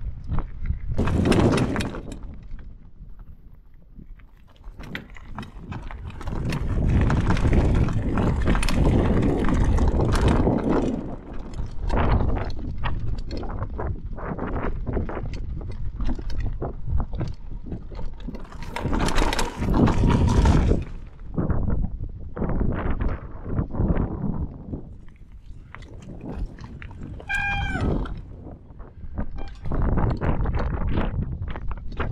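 Mountain bike running down a rough, stony off-road track: tyres crunching over gravel and the bike rattling over bumps, with wind on the microphone. Near the end a short, wavering high-pitched squeal sounds.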